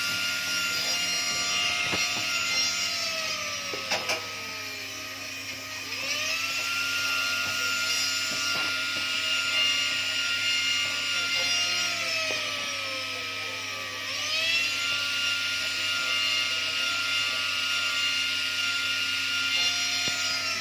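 Jeweller's handheld rotary tool (micromotor handpiece) whining at high speed while working a small gold piece. Twice it winds down and then speeds back up to a steady whine.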